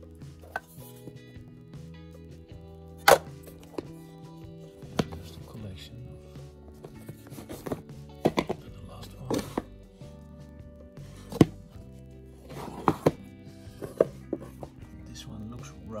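About a dozen irregular sharp knocks and clacks as wooden tool cases and watchmaker's tools are handled, moved and set down, over steady background music.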